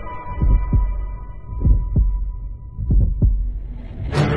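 Cinematic heartbeat sound effect: three slow double thumps, one pair about every second and a quarter, over a faint high sustained tone that slowly fades.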